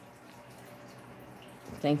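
Quiet, steady background hiss with no distinct events, then a man's voice starting near the end.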